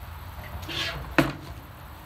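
Handling noise from a metal-lugged drum shell being turned over: a soft rustle, then one sharp knock a little over a second in.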